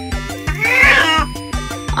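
An elderly cat meows once, a single call that rises and then falls in pitch, over background music with a steady beat. The owner takes it as a protest at being helped.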